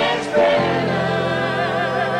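Rock band playing live with a male lead vocal; about half a second in, the singer holds a long note with vibrato over sustained chords.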